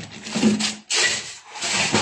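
Rubbing and scraping noise coming in several short bursts.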